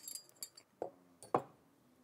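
Metal forks clinking and scraping against plates as spaghetti is twirled, a handful of light, separate clinks.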